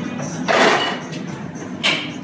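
Bartender's hands working at the counter with egg and shaker tins: a short rustling clatter about half a second in, then a single sharp click near the end.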